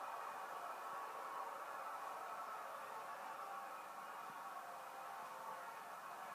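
Faint steady hiss and hum of room tone, with no distinct sound event.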